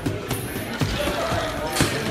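Boxing gloves striking a trainer's focus mitts in quick combinations, a series of sharp smacks, over music and voices.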